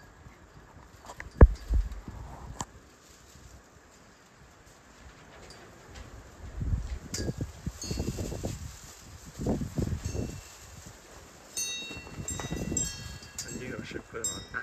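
Wind gusting across the microphone, with light metallic chiming rings that begin about halfway through and come as a quick run of repeated strikes near the end. A single sharp knock sounds about a second and a half in.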